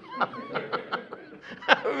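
A man chuckling softly, a string of short laughs with a sharper one near the end.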